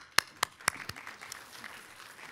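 Hands clapping close to a microphone: about five sharp claps, roughly four a second, over softer applause from the room that dies away.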